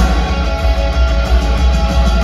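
Live rock band playing an instrumental stretch: electric guitars over a heavy, booming bass low end, heard from among the audience.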